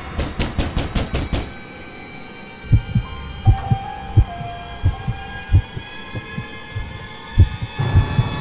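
Horror soundtrack: a heartbeat sound effect of low double thumps, about one beat every 0.7 s, over a sustained droning pad. It opens with a quick run of sharp hits in the first second and a half.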